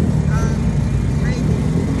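A vehicle's engine and road rumble, low and steady, with faint voices over it.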